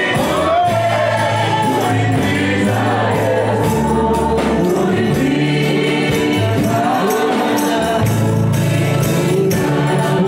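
A gospel praise team singing together into microphones over a live band, with a stepping bass line and drums keeping a steady beat.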